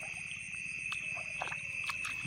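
Night insect chorus: a steady, high-pitched drone, with a few faint clicks.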